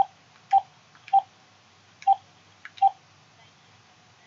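Keys pressed one at a time on a handheld phone's keypad: five short beeps, all at the same pitch and each with a small button click, coming unevenly over about three seconds.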